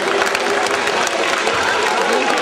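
Audience applauding steadily, many hands clapping at once.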